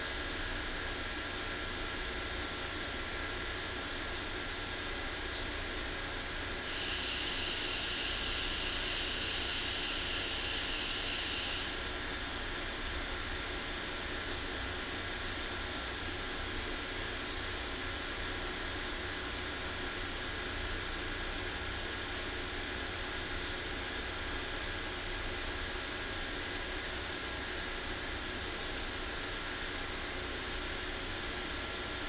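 Steady background hiss with a low hum, and a brighter high hiss for about five seconds starting about seven seconds in.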